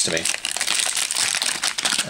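Kidrobot foil blind-box pouch crinkling steadily as it is worked in the hands.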